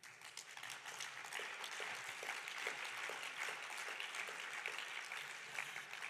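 Audience applauding in a large hall, many separate claps blending together; it builds up over the first second or two and eases off near the end.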